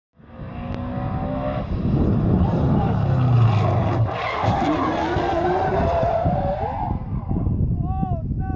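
A Ford Mustang's engine running hard while its tyres spin and squeal in a burnout, the squeal wavering up and down in pitch. It starts suddenly just after the beginning.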